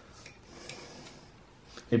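Faint, sparse clicks and light handling noise of small objects being moved by hand, with a man's voice starting right at the end.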